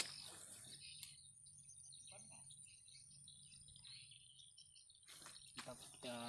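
Near silence: faint outdoor ambience with a few soft, high chirps through the middle and a faint steady high whine.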